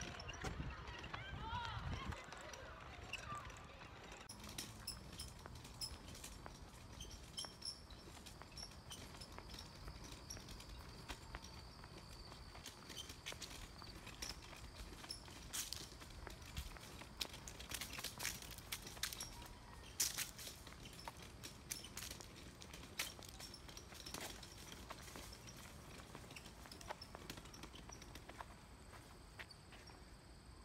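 Footsteps and a wheeled shopping trolley rolling over a paved path: a run of irregular light clicks and knocks, thickest in the second half.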